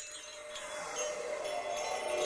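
A chime-like musical sting for a logo animation, starting up and growing steadily louder as the music builds.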